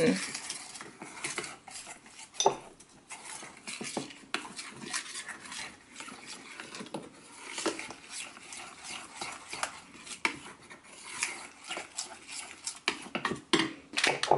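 Metal spoon stirring a wet paste in a small stainless steel bowl: irregular clinks and scrapes of the spoon against the bowl, over and over.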